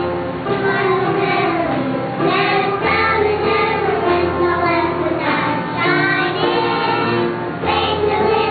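A group of children singing a church song together, with low sustained accompaniment notes under the voices.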